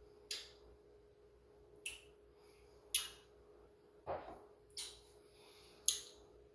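A man sipping beer from a glass: about six short sips and swallows, spread over the few seconds, with a faint steady hum underneath.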